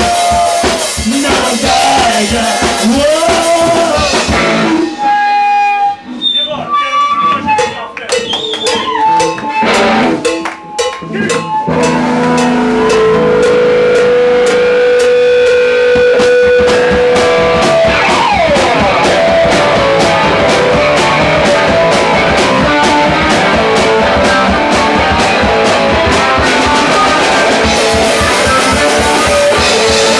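Live rock band playing loud with electric guitar and drum kit. About four seconds in the band drops to a sparse break of single notes and separate drum hits, then the full band comes back in about twelve seconds in, with a long held note and a sliding guitar note soon after.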